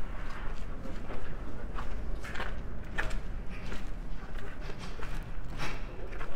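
Careful footsteps on an icy cobblestone street: a few uneven, scattered steps over a low steady rumble.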